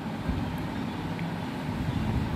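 Steady background hiss with a low rumble, under the faint scratch of a pen writing on paper.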